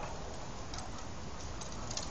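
Plastic tricycle wheels rolling slowly over concrete, a steady low rattle with small ticks.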